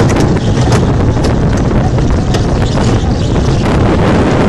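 Rollercoaster train running on its track, a steady loud rumble with wind on the phone's microphone and scattered sharp clacks from the wheels and track.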